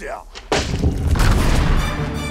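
A sudden loud boom about half a second in, deep and rumbling as it dies away: a trailer impact hit. Music comes in near the end.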